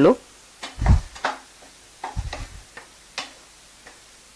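Wooden spatula stirring diced pineapple in a non-stick frying pan: a few separate knocks and scrapes, with a dull thump about a second in and a cluster of soft thumps about two seconds in.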